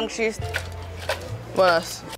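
Kitchen clatter: a few quick, sharp knocks of utensils and a metal cooking pot being handled, with a brief voice near the end.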